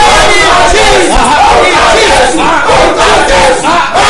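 Several voices shouting together at once, loud and unbroken, a mass shout of prayer called for just before.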